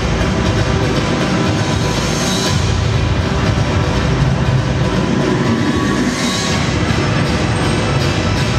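Loud recorded dance music playing continuously as a backing track.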